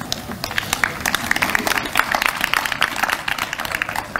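Audience applauding: a dense patter of many hands clapping that builds over the first second and thins out near the end.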